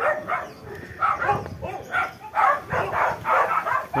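A dog barking repeatedly, short barks coming several times a second.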